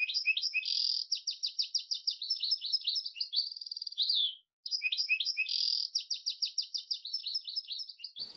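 Canary singing a song of rapid trilled and chirped phrases. It breaks off briefly a little after four seconds in, then starts up again.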